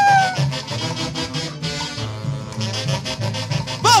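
Live huaylash band playing an instrumental passage: saxophones over timbales and congas, with a steady rhythmic low beat. A held note sliding down in pitch fades out in the first half second, and a shout comes right at the end.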